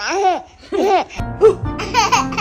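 Baby laughing in short bursts that rise and fall in pitch, with background music coming in about a second in.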